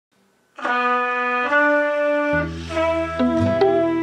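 Trumpet playing two long held notes, the second a step higher, after a brief silence. Past the halfway mark, low acoustic guitar notes and plucked notes come in under it.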